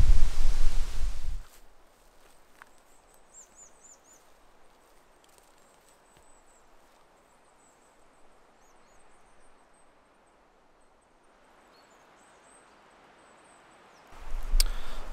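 Wind buffeting the microphone for about the first second and a half, then a very quiet conifer forest with a few faint, very high-pitched bird chirps.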